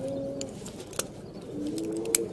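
A dove cooing outside: two long, steady, low notes, one at the start and one near the end, with a single sharp click about a second in.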